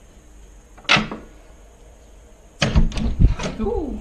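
A short sharp sound about a second in, then, from about two and a half seconds in, a door being pushed open with thumps and knocks, and a short cry that falls in pitch near the end.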